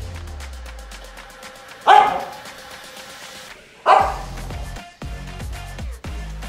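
English springer spaniel barking twice, two loud single barks about two seconds apart, over background music with a steady beat.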